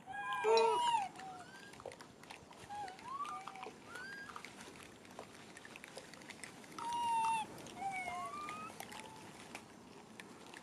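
Rhesus macaques cooing: a loud run of short, arching pitched calls in the first second, scattered shorter calls through the middle, and another loud call about seven seconds in.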